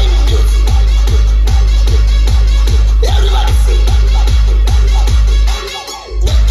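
Loud electronic dance music played through a truck-mounted DJ sound system, with a heavy bass and a fast, steady kick drum. The bass drops out briefly near the end.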